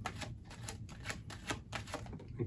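Tarot cards being shuffled in the hands: a quick, even run of soft card ticks, several a second.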